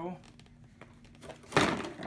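Plastic air cleaner box being wiggled and pulled out of a car's engine bay: light clicks and scrapes, then one loud rough scrape and clunk about one and a half seconds in as it comes free.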